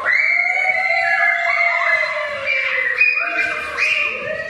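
High-pitched voices holding long notes that slide slowly in pitch, one falling gradually, with others overlapping and starting later.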